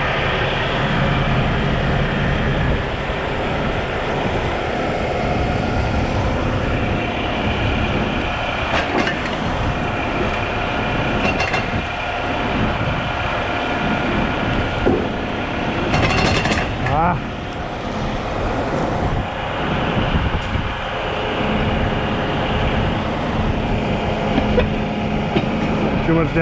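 Heavy diesel engines running steadily under load as a tow truck's winch pulls a stuck semi-truck over a curb, with a few scattered clanks and knocks.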